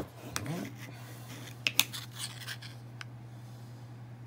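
Scattered small clicks and taps as two rechargeable hand warmers are handled, over a steady low hum. Two clicks close together, about two seconds in, are the loudest.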